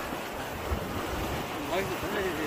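Shallow seawater washing and lapping steadily in the surf, with wind rumbling on the microphone.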